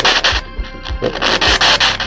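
Choppy bursts of loud static hiss, breaking on and off in quick succession, in which the investigators hear a reply of the name "Elizabeth" to their question.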